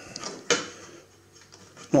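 Light clicks and knocks of a circuit board being handled inside a metal instrument chassis, with one sharper click about half a second in.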